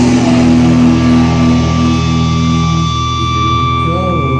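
A live punk-metal band playing loudly, led by distorted electric guitar holding long ringing notes.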